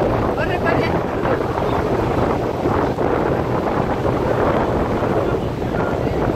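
Steady wind buffeting the microphone over a continuous low rumble at sea, with faint distant voices about half a second in.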